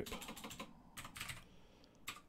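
Faint computer keyboard typing: a quick run of keystrokes, mostly in the first second, then a few scattered taps.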